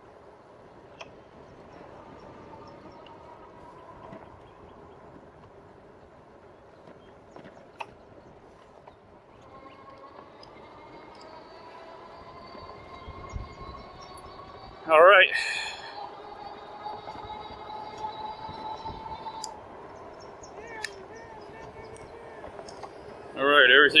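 A RadMini electric fat-tyre bike being ridden: a faint whine from its rear hub motor, rising slowly in pitch through the middle, over low tyre and wind noise. A short loud voice breaks in about fifteen seconds in, and speech starts near the end.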